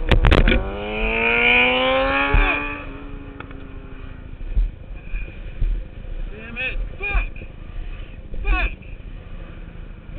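Sport motorcycle engine winding down steadily from high revs over about three seconds as the rider slows, with wind noise. Later come a few short rising-and-falling bursts.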